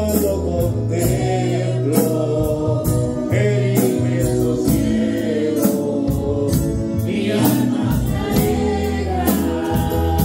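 Live gospel worship song: a man sings into a microphone, with women's backing vocals, keyboard and a steady drum beat with cymbals.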